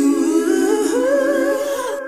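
Sung jingle of a radio programme's intro: voices hold a sustained vocal chord without words, stepping up in pitch partway through and stopping just before the end.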